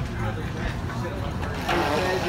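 Indistinct voices of people talking as they walk, over a steady low rumble; the talk gets louder near the end.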